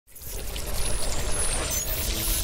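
Sound-design effects for a TV segment's title graphics: a loud rush of noise over a deep rumble, swelling up from silence in the first half second.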